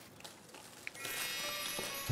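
A shimmering, glittery music sting enters suddenly about a second in, after a near-quiet moment with a faint click. It is an edited-in reveal effect.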